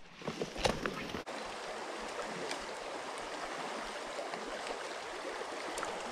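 Shallow creek water running steadily over rocks, a continuous even rush. A few brief clicks come in the first second.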